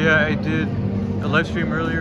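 A man's voice talking over a steady low background rumble.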